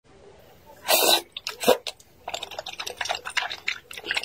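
Close-miked slurping of wide, sauce-coated flat noodles: a loud slurp about a second in and a shorter one soon after, then a quick run of wet sucking and chewing smacks.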